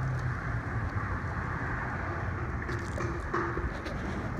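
Steady low rumble of wind on the phone's microphone mixed with road traffic, with no sharp sounds.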